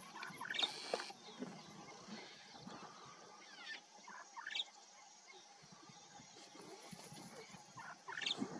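Faint, short, high-pitched animal calls over a low background hiss: a couple about half a second in, more around three seconds, and a clear one about four and a half seconds in.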